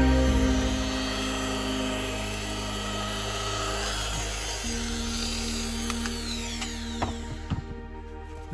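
Electric machine polisher with a foam pad running against a fibreglass boat hull, a steady power-tool whir that stops shortly before the end, over background music.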